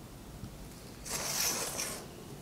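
Brief scraping rustle, under a second long and starting about a second in, as a plastic ruler and ballpoint pen are moved across a sheet of cardboard while drafting a pattern.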